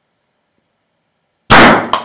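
Calcium carbide rocket going off: the acetylene gas in a plastic water bottle, lit by a lighter flame, explodes with a single sharp bang about one and a half seconds in, blasting the cup off the top of the bottle, with a brief echo after.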